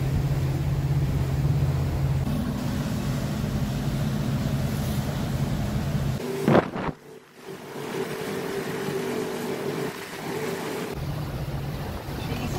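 Steady low drone of a motor yacht's engines under way, with wind and water noise. About halfway through a sudden sharp knock stands out; the deep drone then drops away and a steadier, higher hum carries on.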